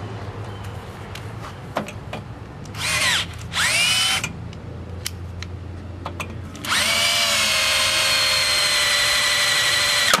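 Cordless drill drilling out the rivets that hold the recoil starter housing on a yard vacuum's engine: two short bursts about three seconds in, then a steady run of about three seconds near the end.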